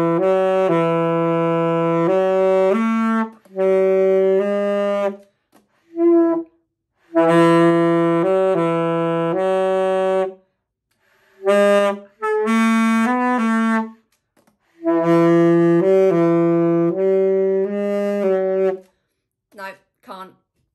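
Alto saxophone played by a beginner: long, steady low notes in about seven separate blows, each holding one to four notes that step up or down, with short breaks between them.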